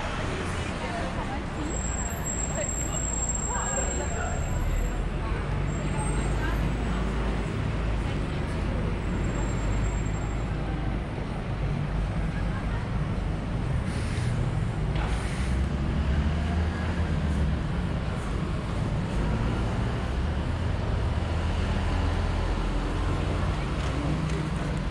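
Busy city street ambience: a steady rumble of buses and cars, with passers-by talking. A thin high whine sounds briefly a couple of seconds in.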